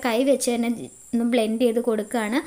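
A woman's voice speaking in short phrases, with a brief pause about a second in.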